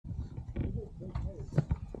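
Low rumble of wind on the microphone, with a faint voice of wavering pitch about halfway through and two sharp clicks near the end.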